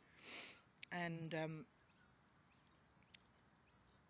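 A woman's breath drawn in through the nose, then a brief flat-pitched vocal hesitation like 'um' about a second in. After that there is only faint room tone.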